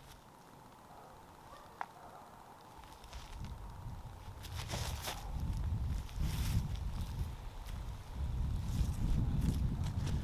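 Wind buffeting a microphone's furry windscreen: a low, uneven rumble that builds up about three seconds in, with a few brief rustles on top.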